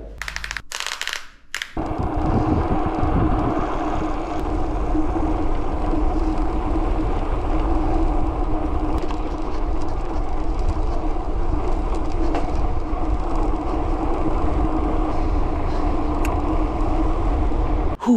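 A mountain bike rolling along a paved road at steady speed: wind buffeting the microphone and a constant hum from the knobby tyres on the asphalt. It is preceded by a few sharp clicks in the first couple of seconds.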